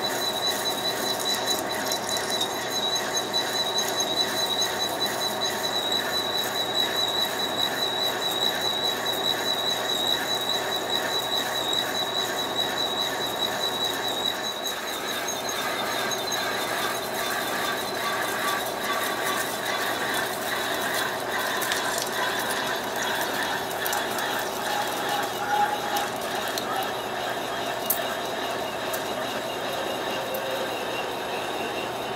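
Metal lathe cutting a circular groove into a spinning square metal plate to cut out a disc, with a high, steady whine from the cut through the first half that fades about halfway through. The lathe keeps running, with a few light ticks near the end.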